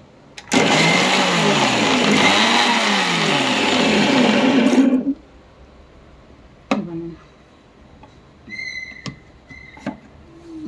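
Electric mixer grinder (mixie) running in one burst of about four and a half seconds, grinding a wet white paste, then cutting off abruptly. A short knock follows a couple of seconds later.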